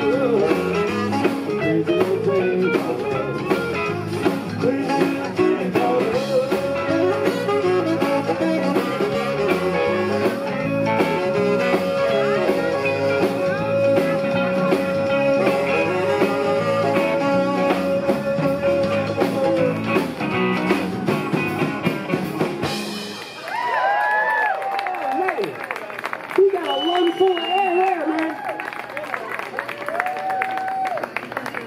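A live band with electric guitars, bass, drums and saxophone plays out the end of a song, with one long held note in the middle. The music stops about 23 seconds in, followed by cheers, whoops and a whistle from the audience.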